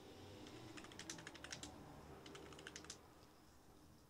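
Faint computer keyboard typing: a quick run of key clicks that stops about three seconds in.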